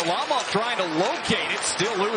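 A sports commentator's voice calling the hockey play.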